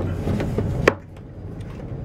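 Hands working the plastic spring cartridge and flush ball valve of a Dometic RV toilet: light rubbing and handling noise with one sharp plastic click about a second in, over a low steady hum.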